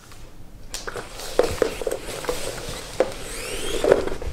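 Motorised plastic pet toy bone knocking a few times on a wooden floor, with its small electric motor's whine rising in pitch near the end as it speeds up.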